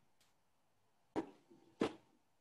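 Two brief knocks, a little over a second in and again near the end, from a canvas panel being handled on a table. Near silence between them.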